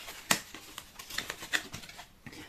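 Cardboard packaging handled and crackling as an eyeshadow palette is pulled from its torn box, with one sharp crack about a third of a second in and a few lighter clicks after it.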